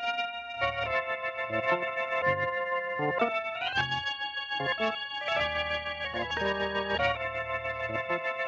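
Organ music at the end of a 1940s radio drama episode: held chords over a bass line, moving to a new chord every second or two.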